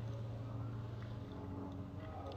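Faint room tone with a steady low hum, and no distinct sound events.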